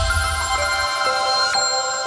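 Electronic logo-sting music: a sustained, bright, bell-like synth chord, its low bass dying away about a second in.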